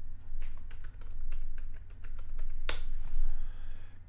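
Typing on a computer keyboard: a run of quick keystrokes, with one louder click about two-thirds of the way through, over a low steady hum.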